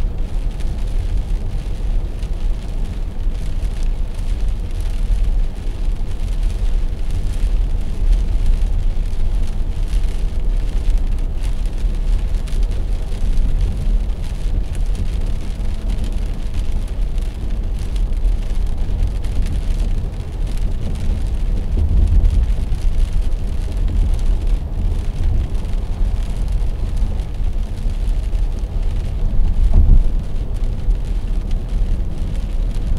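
Steady low rumble of a car cruising at about 80 km/h on a wet highway, heard from inside the cabin, with a faint hiss of tyres on wet road and rain over it.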